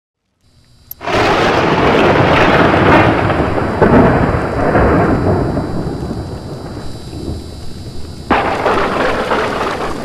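Thunder sound effect with a rain-like hiss: a sudden loud clap about a second in that rolls and slowly fades, then a second clap near the end before it cuts off abruptly.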